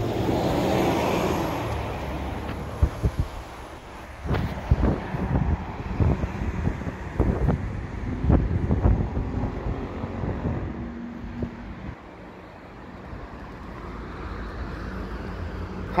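An articulated city bus passes close by, its engine and tyre noise swelling over the first two or three seconds with a faint high whine that fades out; road traffic noise then carries on, broken by a run of irregular knocks and bumps between about three and ten seconds in.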